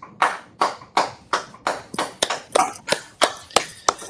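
Hand clapping in applause, a steady run of about three claps a second.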